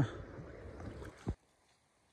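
Steady rush of river water from the shallows, with a single knock just over a second in; the sound then cuts off abruptly to near silence.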